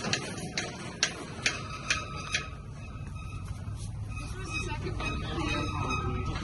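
Cattle hooves clicking on concrete as a heifer is led on a halter: six sharp clicks about half a second apart, stopping after about two and a half seconds.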